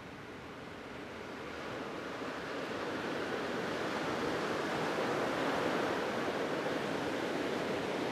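Ocean surf washing on the beach: a steady rushing that slowly swells over the first few seconds, then holds.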